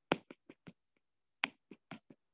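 A stylus tip clicking against a tablet's glass screen during handwriting: about eight sharp, irregular taps.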